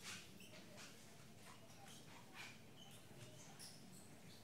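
Near silence: faint room tone with scattered soft rustles and a few brief, high squeaks.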